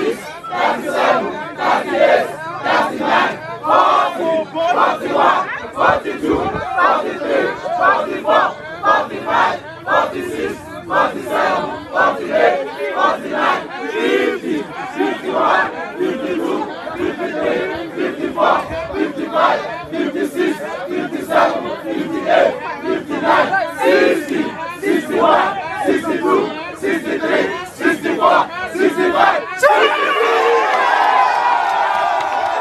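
A large crowd shouting and cheering together in jubilation, many voices at once, loud and continuous.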